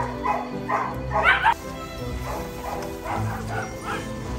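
Dogs and puppies barking: a quick run of short barks in the first second and a half, then more, quieter barks near the end, over background music.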